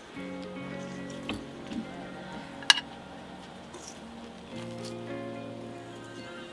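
Background music with sustained chords, over the sounds of salad being served with metal tongs from a stainless steel bowl: a few soft clicks and wet squishes, and one sharp metallic clink near the middle.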